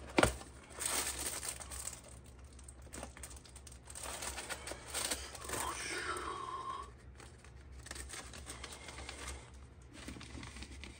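Paper coffee filter and its cardboard box rustling and crinkling as a filter is pulled out and set into a silicone pour-over dripper, with a sharp tap just after the start and a brief falling squeak past the middle, over a steady low hum.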